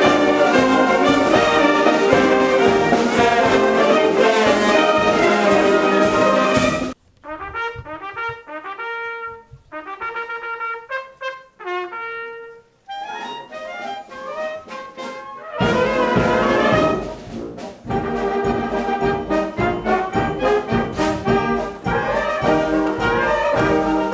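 Brass band playing loudly, with tubas in the lower part. About seven seconds in the full band cuts off abruptly to a solo trumpet playing a slower, quieter passage of separate notes. Past the middle the full band comes back in.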